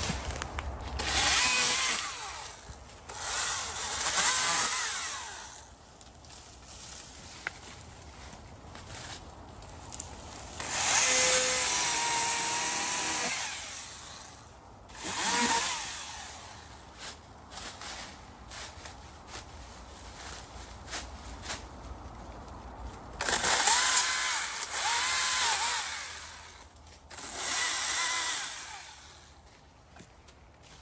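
Chainsaw revving up in about six bursts of a few seconds each as it cuts through ivy at the base of a tree. Its pitch rises and falls with each cut, and it drops back to a lower running sound between bursts.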